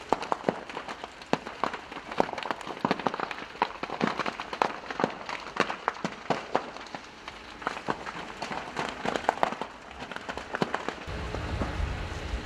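A large building fire crackling and popping: many sharp, irregular cracks, several a second, some louder than others. A low steady rumble comes in near the end.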